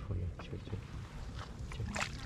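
Wet cast net being hauled by hand out of shallow pond water, with a few small splashes and drips as the mesh comes up, over a low rumble of wind on the microphone.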